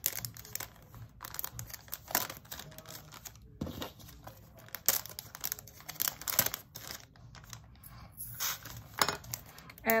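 Small resealable plastic bags crinkling and rustling as they are handled, with scattered light clicks and taps of small plastic pieces.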